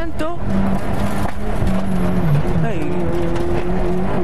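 Fiat 600 Kit rally car's engine heard from inside the cabin while being driven hard on a special stage. About two seconds in, the engine note drops, then settles and holds steady.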